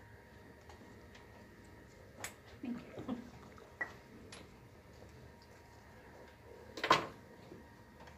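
Faint clicks and knocks of dental instruments and an anesthetic syringe being handled on a counter tray, with one louder clack about seven seconds in.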